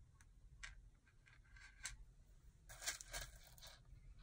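Faint, scattered clicks and scrapes of small rhinestone flatbacks being picked through by hand on cardboard, with a short cluster about three seconds in.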